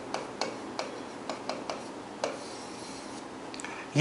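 A pen tip tapping and scratching on an interactive display screen as block letters are written, a series of sharp clicks about three a second that thin out after about two seconds, with a last couple of clicks near the end.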